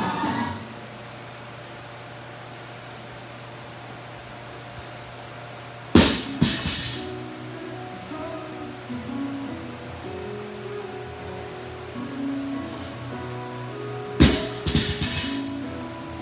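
A loaded barbell with rubber bumper plates is dropped onto the rubber gym floor twice, about six seconds in and again near the end, each a loud thud with a short rattle. Background guitar music plays throughout.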